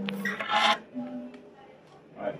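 A short rubbing scrape of about half a second, from the recording phone being handled as it settles onto the table, then the quiet hum of the room.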